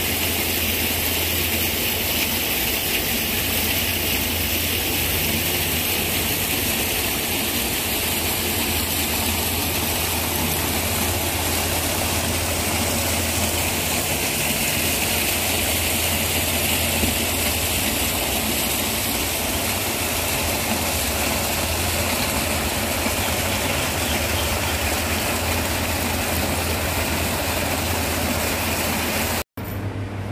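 A steady, loud machine-like hum under an even rushing noise, unchanging until a brief break near the end.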